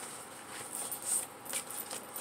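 Soft, scattered rustling and light scratching of loose paper sheets being handled and moved about.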